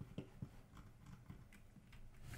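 Near silence: room tone with a few faint, short computer-mouse clicks.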